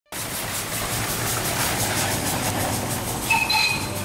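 Steam engine chuffing in an even rhythm, with a short whistle-like tone sounding near the end.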